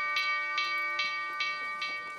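Bell-like chime: a held chord with quick repeated tinkling strikes, about five a second, slowly fading.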